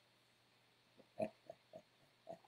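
A man laughing: a run of short chuckles, about four a second, starting about a second in.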